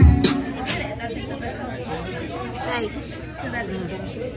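Chatter: several people talking indistinctly at once. A music track with singing cuts off just after the start.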